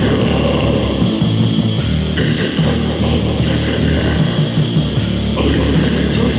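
Heavy metal band playing a raw demo recording, with distorted electric guitar over bass and drums, loud and continuous. The guitar part changes about two seconds in and again near the end.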